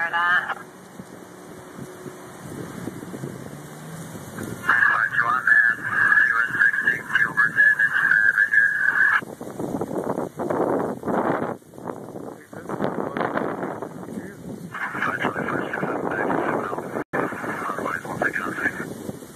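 Gusty dust-storm wind buffeting the phone's microphone in uneven surges, with stretches of muffled, unintelligible police scanner radio audio.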